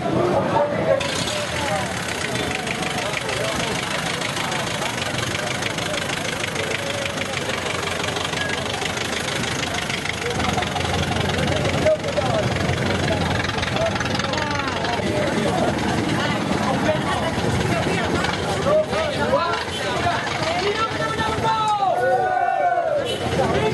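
A vehicle engine running steadily, with people talking over it.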